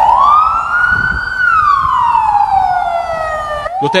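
Ambulance siren wailing: one slow cycle, the pitch rising for about a second and a half and then falling slowly, with a new rise beginning near the end.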